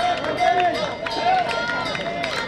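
Several spectators' voices talking over one another, with runners' footsteps on the track as the pack approaches.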